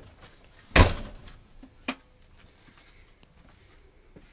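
A single heavy thump about a second in, followed about a second later by one short, sharp click.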